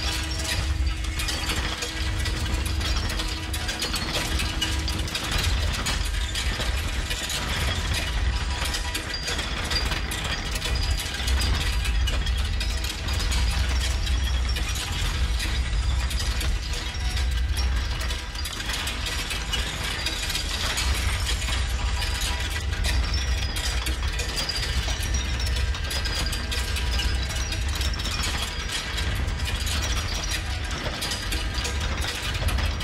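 Experimental noise music: a dense, continuous texture of mechanical clicking and ratcheting over a low rumble, with a faint steady tone that stops about five seconds in.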